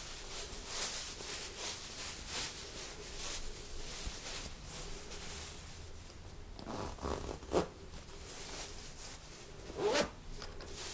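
Zip on a soft fabric travel pillow being done up in a series of short rasps, with the cloth rustling as it is handled. A louder burst of handling noise comes about seven and a half seconds in.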